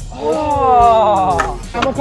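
A young man's long drawn-out yell, held for about a second and a half and sliding slowly down in pitch, followed near the end by a shorter shout.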